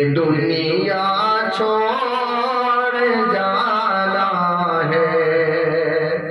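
A man's solo voice singing an Urdu naat, melodic and drawn out in long held notes.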